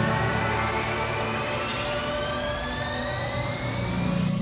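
Film score and sound design: a dense low drone with several high tones sliding slowly upward in pitch together, a steady rising swell.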